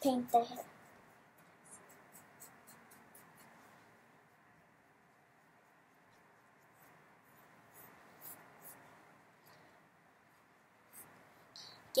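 Fine paintbrushes scratching faintly against a statue as it is painted, with scattered light ticks and a quiet stretch in the middle. A short bit of speech is heard at the very start.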